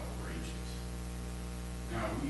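Steady electrical mains hum: a low, even buzz with a stack of overtones, running unchanged.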